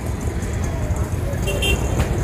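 Road traffic running steadily, with a crowd's voices mixed in and a short high-pitched tone about one and a half seconds in.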